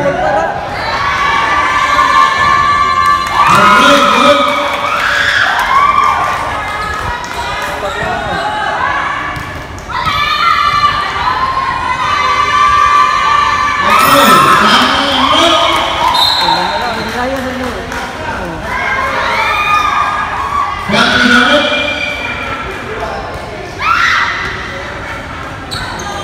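Basketball game on an indoor hardwood court: a ball bouncing, with players and spectators shouting and cheering throughout.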